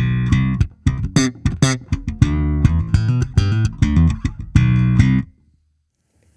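Electric bass, a Fender Jazz Bass, played through an Eden Terra Nova TN226 bass head with its Enhance EQ switched off: a riff of short, sharply plucked notes that stops a little after five seconds in.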